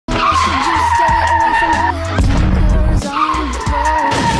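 A tyre-screech sound effect, a sustained high squeal, laid over background music with a steady pulsing bass. The squeal breaks off about halfway, a deeper rumble fills the gap, and the squeal returns near the end.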